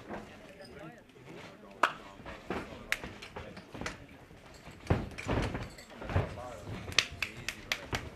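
Indistinct voices of onlookers calling out, over sharp slaps and thuds of bare-skinned grappling on a cage mat. A few sharp slaps are scattered through, and heavier thuds of bodies come around the middle.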